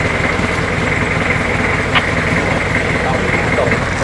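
A motor vehicle's engine idling steadily, with a constant high-pitched tone over it.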